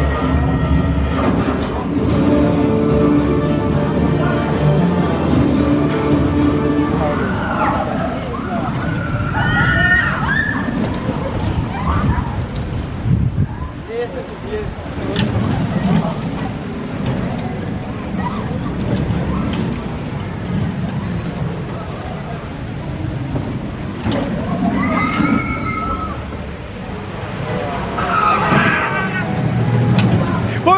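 Music with held tones for the first several seconds, then a Gerstlauer Eurofighter steel roller coaster train running along its track with an uneven rumble. Riders scream at two points as it passes.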